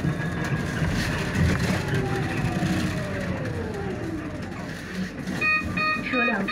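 Electric city bus slowing to a stop: the traction motor's whine falls steadily in pitch over the cabin and road rumble. Near the end, a fast run of short, repeated beeps starts, the bus's door signal at the stop.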